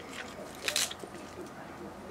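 Crisp lettuce leaves rustling as they are picked out of a metal bowl by hand, with one short crackly burst a little over half a second in.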